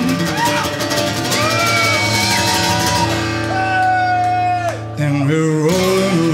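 Live band playing an instrumental passage: upright bass and drums with cymbals under strummed acoustic guitar, while a guitar plays long, held lead notes that bend up and down.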